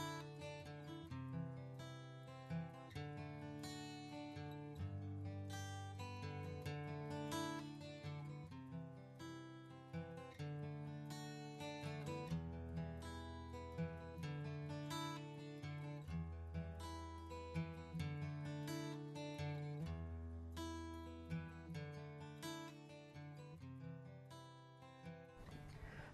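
Soft background music of plucked acoustic guitar: a melody of single picked notes over slow bass notes.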